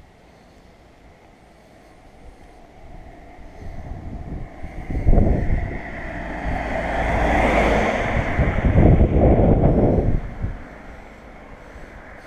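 A car approaching and passing close by: engine and tyre noise grows over several seconds, stays loud for a few seconds past the middle, then falls away quickly near the end.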